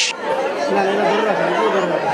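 A crowd of many people talking and calling out at once, a steady babble of overlapping voices.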